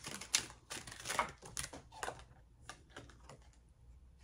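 Tarot cards being handled on a table: a quick run of clicks and rustles as the deck is shuffled and cards are drawn for about two seconds, then a few scattered taps.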